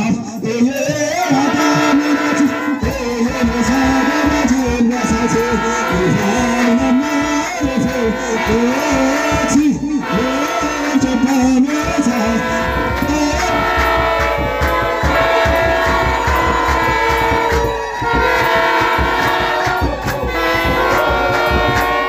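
A choir of Ethiopian Orthodox chanters sings a wereb hymn in unison in Afaan Oromo. A deep rhythmic beat joins the singing about three seconds in.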